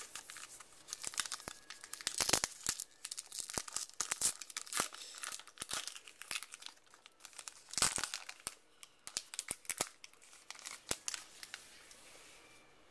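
A baseball card pack's wrapper being torn open and crinkled by hand: a run of sharp crackles and tearing, loudest about two seconds in and again near eight seconds.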